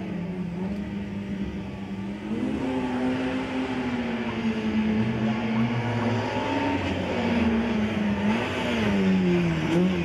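Peugeot 106 race car's engine held at steady revs on the start line, then rising in pitch as the car pulls away about two and a half seconds in and getting louder as it drives off. Near the end the pitch dips and rises again twice.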